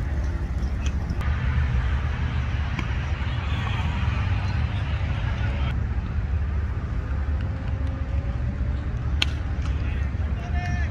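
Outdoor cricket-ground ambience: a steady low rumble with faint, distant players' voices, and one sharp knock about nine seconds in.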